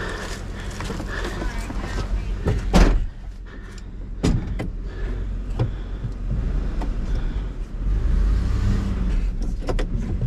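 Pickup truck engine idling with a steady low hum. A door shuts with a loud knock about three seconds in, after which the sound is duller, as if heard from inside the cab, and the low rumble grows louder near the end.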